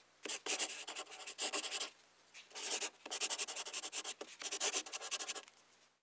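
Pen writing on a paper workbook page: quick scratchy strokes in bursts, with a short pause about two seconds in.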